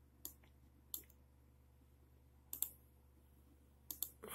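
A few faint, isolated clicks over a low steady hum, with a quick double click a little past halfway.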